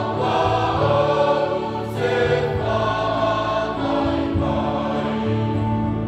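Church choir singing a Samoan hymn in parts, holding sustained chords that change about every second, with a brief break between phrases about two seconds in.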